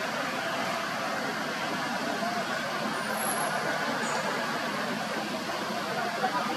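Steady outdoor background noise: an even rushing hiss with no distinct events.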